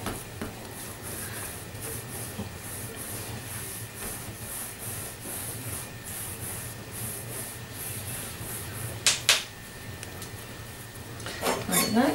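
Hands rolling soft butter-cookie dough into a long log on a wooden tabletop: faint rubbing in quick, repeated back-and-forth strokes. A couple of sharp knocks about nine seconds in, and a few more just before the end.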